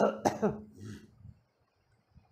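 A person coughing twice in quick succession, short sharp coughs that die away within the first second and a half.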